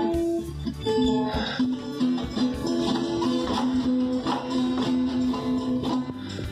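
Colombian tiple strummed and plucked by a small child, its notes ringing on between strokes.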